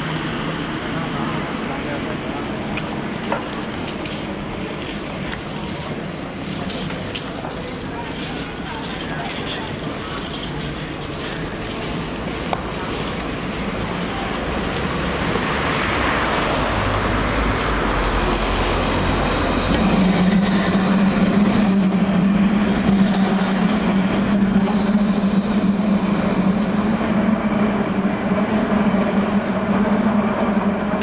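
Street traffic ambience heard while walking on a pavement, with a car driving past a little over halfway through. A steady low hum sets in about two-thirds of the way in and holds to the end.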